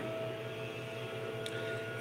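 Steady low hum over a faint hiss, with one faint click about one and a half seconds in.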